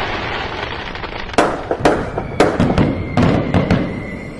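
Fireworks: a steady hissing rush, then from about a second and a half in a string of sharp bangs and crackles.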